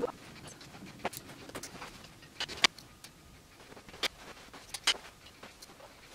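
Soft rustling of clothes with a few short, sharp clicks and knocks of plastic clothes hangers as pants on hangers are handled.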